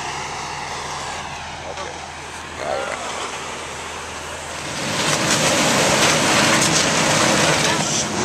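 A vehicle engine runs with a steady low hum. About five seconds in, a louder, even rushing noise joins it.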